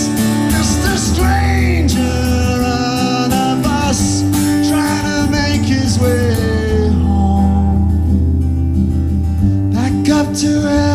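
Live song: a man singing a held, sliding melody over acoustic guitar.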